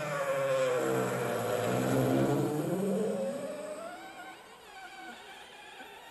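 Vacuum cleaner played as an instrument through the mouth: a buzzing, wavering tone that slides down in pitch and back up, fading after about three seconds.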